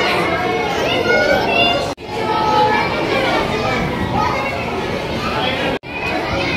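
Many children's voices chattering and calling out over one another at once. The sound cuts out for an instant twice.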